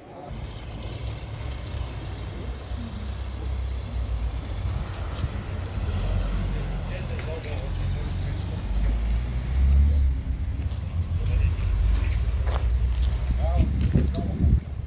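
Outdoor low rumbling noise that grows louder in the second half, with people's voices near the end.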